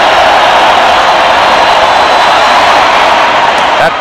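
A large football stadium crowd making a loud, steady roar during a play, as carried on a TV broadcast.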